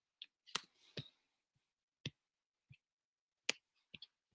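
Irregular keyboard taps during silent writing: about seven short, sharp clicks spaced a fraction of a second to over a second apart, in a small quiet room.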